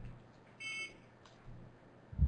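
A single short electronic beep, about a third of a second long, about half a second in, over faint room noise.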